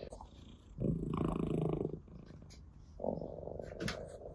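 Orange tabby cat purring close to the microphone, in two stretches about a second long each with a quieter pause between, the first the louder.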